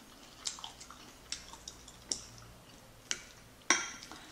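Close-miked mouth chewing soft, chewy Korean fish cake in spicy tteokbokki sauce: a few faint, sharp wet clicks and smacks, with a louder one near the end.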